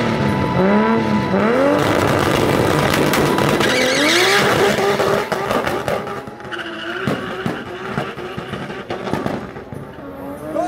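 Nissan Skyline R32 drag car revving in rising and falling bursts as its rear tyres spin and squeal, then pulling away down the strip with its engine note fading into the distance.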